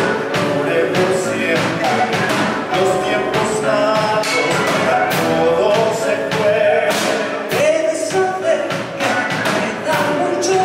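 A man and a woman singing a show-tune duet into microphones, with women's voices backing them, over a continuous instrumental accompaniment.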